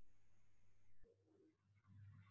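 Near silence in a pause between speech, with only a faint low hum and a faint, brief low sound about a second in.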